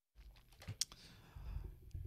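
Faint typing on a computer keyboard: a few scattered keystrokes over a low hum, the sharpest click just under a second in.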